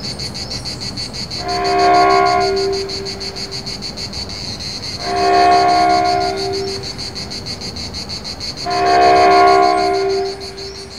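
Insects chirring steadily in a fast, even pulse. Over them a horn sounds three long blasts of a several-note chord, about three and a half seconds apart; these blasts are the loudest sound.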